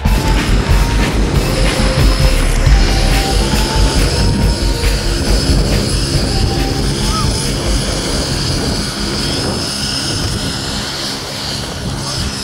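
Heavy wind rushing over a parachutist's camera microphone during the canopy descent and landing, with faint background music under it.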